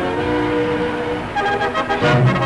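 Orchestral background music: held chords, changing about one and a half seconds in to a livelier passage of short, repeated accented notes.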